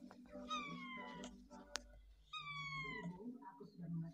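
Domestic cat meowing twice, two drawn-out calls that each fall in pitch, about two seconds apart.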